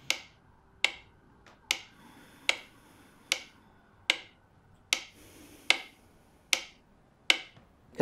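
A steady, even ticking: ten sharp ticks, one about every 0.8 seconds, each dying away quickly.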